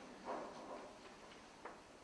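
A quiet pause in a man's talk: faint room tone, a brief soft noise about a quarter second in, and one small click a little past one and a half seconds.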